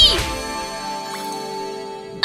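A loud, high-pitched scream that breaks off a fraction of a second in, followed by a held musical chord that slowly fades, a comic sound-effect sting.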